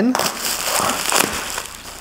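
Plastic packaging wrap crackling and crinkling as it is pulled open by hand, dying away about a second and a half in.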